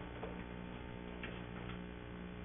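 Meeting-room tone: a steady electrical hum with a few faint clicks.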